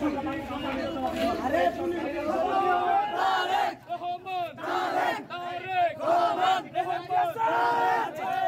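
A crowd of men shouting slogans together, loud throughout; after a few seconds it falls into short, evenly repeated bursts of chanting.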